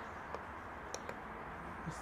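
A few faint, separate clicks from the buttons on a Viper Mini pretreatment machine's control panel, pressed one at a time to step the wheel speed setting down. Quiet room noise lies underneath.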